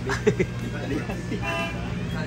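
A short, steady vehicle horn toot about one and a half seconds in, over a steady low hum and brief snatches of voices.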